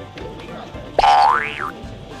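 A comic sound effect added in editing, about a second in: a loud, springy tone that glides quickly up in pitch and bends back down at the end, over light background music.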